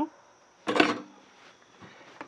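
A short clatter of hard objects being handled, about a second in, followed by a few faint small knocks near the end.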